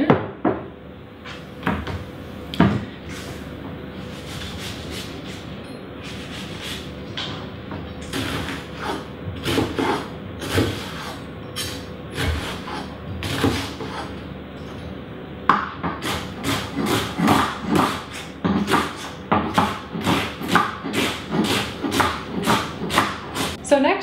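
Chef's knife dicing an onion on a wooden cutting board. Scattered cuts come first, then about halfway through a quick, even run of chops on the board.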